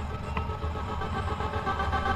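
Airflow rushing over a glider-mounted camera's microphone in flight, a steady low rumble, with several steady tones held above it.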